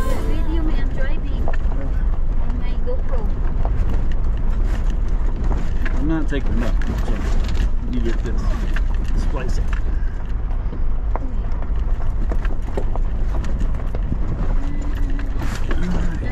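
Four-wheel-drive vehicle driving over a rough gravel road: a steady low rumble of engine and tyres, with scattered rattles and clicks from stones and the jolting body.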